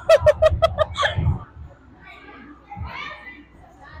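A girl laughing in a quick run of about seven bursts over the first second, then fainter chatter from other girls in the background.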